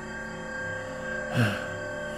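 Quiet background music of steady, sustained tones, with a short sigh from the reader about a second and a half in.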